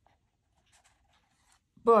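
Faint rustling and soft scraping of printed art cards being picked up and handled, in a few short brushes, before a man starts speaking near the end.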